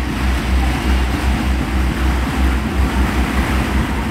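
Wind rumbling on the microphone in uneven gusts over a steady outdoor background hiss.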